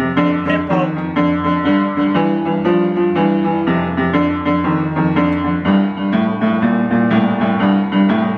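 Upright piano being played: a steady stream of notes over a sustained bass, with the bass moving to a new note about three-quarters of the way through.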